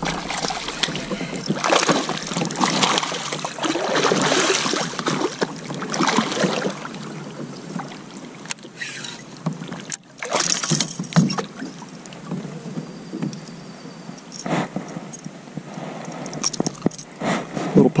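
Wind gusting on the camera microphone over water splashing and lapping at a kayak, as a small pike thrashes at the surface and is lifted aboard.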